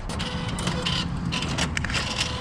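Cash machine dispensing banknotes: the note-feed mechanism whirring, with a few clicks, as the notes are pushed out of the slot.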